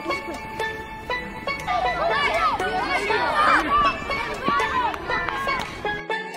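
A group of children shouting and calling out over one another as they run, loudest in the middle, over background music.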